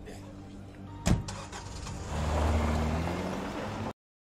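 A sharp thump about a second in, then a car engine starts and runs with its pitch rising slightly, cutting off suddenly near the end.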